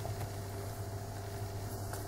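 Steady low background hum with a few faint steady tones, and a single short click right at the start.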